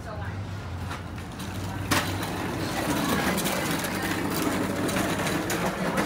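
City street sound: a low steady traffic engine hum, a sharp knock about two seconds in, then passers-by talking close by as they walk past.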